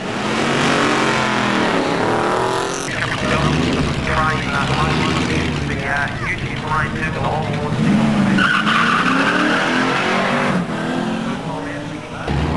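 Drag-racing car engines revving up and down with tyre squeal, a Nissan Skyline R32 GT-R's engine among them. A voice is heard over the engine noise.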